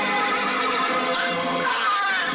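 A horse whinnying over film background music, the call wavering up and down in pitch and loudest near the end.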